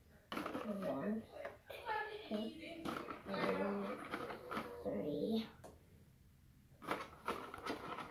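A child talking indistinctly, then a few light clicks near the end as small plastic jars are handled.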